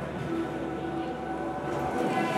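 Background music with held notes that change every half second or so, over a steady noise bed.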